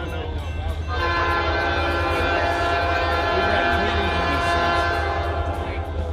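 Locomotive air horn sounding one long blast, a chord of several steady notes, starting about a second in and stopping near the end: the train's warning as it nears the grade crossing. A steady low rumble from the approaching train runs underneath.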